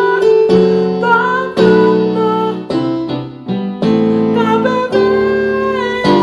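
Piano playing a slow gospel chord progression in seventh chords, with full chords struck and held, changing about every half second to a second.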